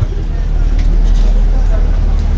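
Steady low rumble and hum picked up through the handheld microphone's sound system, with a faint haze of noise above it and no speech.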